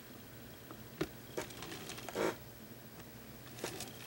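A few light clicks and taps from a paintbrush and painting board being handled on a tabletop, with a louder soft knock about two seconds in.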